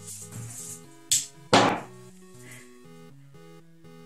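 Background music with steady notes, broken about a second in by two sharp knocks half a second apart, the second louder and longer, as things on the table are swept off and hit the floor.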